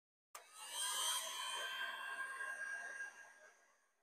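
A heat gun's fan and heater running with a 4000 W pure sine wave inverter under heavy load, drawing well over 100 amps from a 12 V LiFePO4 battery. It is a whine of several steady high tones over a hiss that starts suddenly and fades away near the end.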